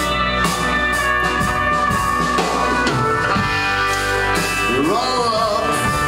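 Live country-tinged rock song played on stage: strummed acoustic guitar with backing instruments and a sung vocal.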